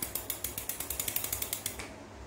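Metal Daiwa spinning reel turning freely after a flick of the handle, its mechanism giving an even run of ratchet clicks, about ten a second, that fade and stop just before two seconds in. The reel is spinning very lightly.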